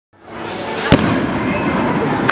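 Fireworks going off: the sound fades in, then one sharp bang comes about a second in, over a steady noisy background with voices.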